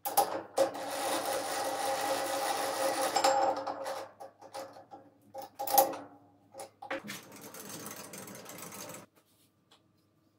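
Chuck key turning the scroll of a lathe's three-jaw chuck: a metallic whirring rasp for about three and a half seconds. A sharp metal clank follows near the middle, then a second, quieter stretch of turning that stops about a second before the end.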